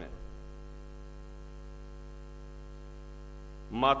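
Steady electrical mains hum: a constant low buzz made of many evenly spaced tones, unchanging throughout.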